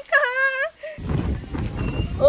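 A person's high-pitched, sing-song exclaimed "ko!" ending a boast of "Galing ko!", followed about a second in by a low rumbling noise with no clear pitch.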